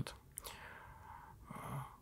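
A man's soft intake of breath in a pause between sentences, with a faint click about half a second in and a faint start of voice near the end.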